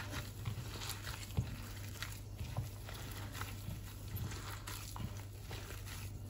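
A gloved hand mixing mashed boiled potatoes with chopped onion in a bowl: soft, irregular squishes and pats. A low steady hum runs underneath.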